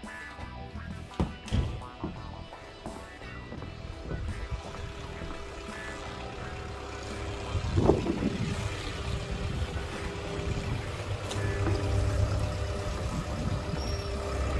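Background music over footsteps and handling knocks, with a skid steer's engine idling steadily and growing plainer from about ten seconds in.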